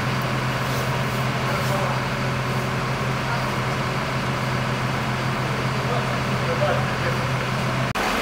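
Concrete pump truck's diesel engine running steadily with a low, even hum, over general street noise.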